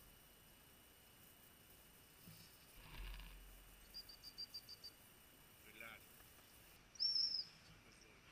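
Faint woodland birds calling: a quick run of about six short high chirps about four seconds in, then a single louder high call near seven seconds.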